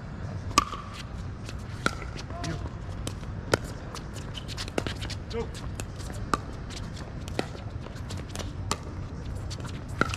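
A pickleball rally: about seven sharp pops of hard paddles striking and bouncing a plastic pickleball, a second or so apart, the loudest about half a second in at the serve. Fainter clicks from play on nearby courts and snatches of distant voices run underneath.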